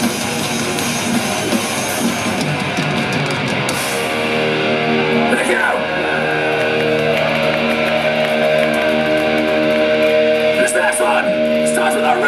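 Thrash metal band playing live with distorted electric guitar, bass and drums. About four seconds in the drumming stops and a held distorted chord rings on while the crowd shouts.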